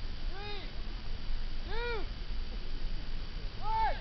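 A person's voice giving three short hooting calls, each rising and falling in pitch, one to two seconds apart, over a steady low rumble.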